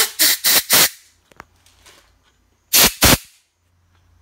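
Short blasts of compressed air from a blow gun forced through an Atomizer 3 fuel injector, blowing the leftover methanol out of it as a spray: four quick blasts in the first second, then two more about three seconds in.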